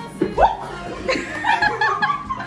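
Several people laughing together over background music, with loud peaks of laughter about half a second in and again near the end.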